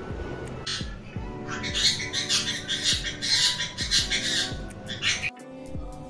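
Dance music with a steady beat, with a pet parrot squawking several times over it. The music cuts off about five seconds in.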